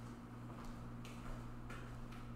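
Quiet room tone: a steady low hum with a few light clicks, irregularly spaced, about half a second apart.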